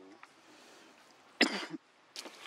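A single short cough about one and a half seconds in, over faint outdoor background.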